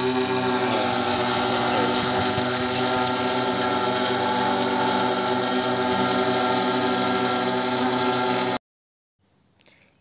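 Six-rotor agricultural spray drone hovering: a loud, steady buzz of its propellers and motors, made of many even tones. It cuts off suddenly about a second before the end.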